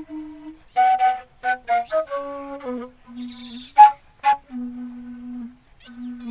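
Fula flute (tambin), a side-blown wooden flute, played solo: short, sharply separated high notes alternate with longer held low notes, with a breathy rasp about three seconds in.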